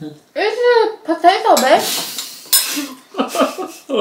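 A spoon and chopsticks clinking against ceramic bowls and plates while people eat at a table.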